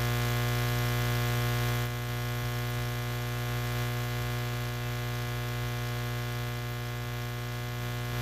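Steady electrical hum with a buzz of many overtones, dropping slightly in level about two seconds in.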